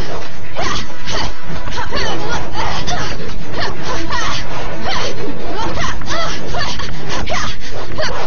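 Staged fight sound effects, a rapid run of whooshes and hits, over loud background music.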